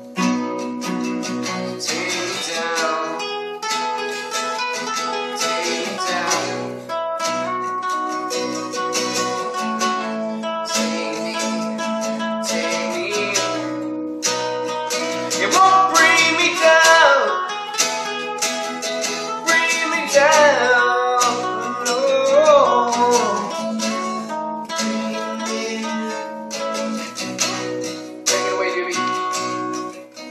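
Two acoustic guitars played together in an instrumental passage of a song, strummed chords with picked notes. A louder stretch in the middle has sliding, bending notes.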